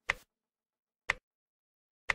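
Quiz countdown-timer tick sound effect: two sharp ticks, one second apart.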